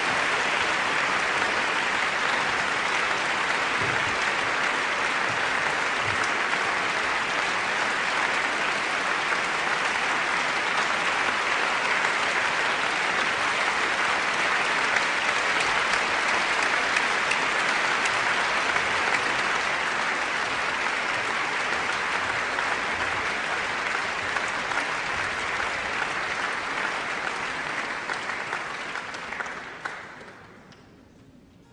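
Concert audience applauding steadily, a dense continuous clapping that fades away near the end.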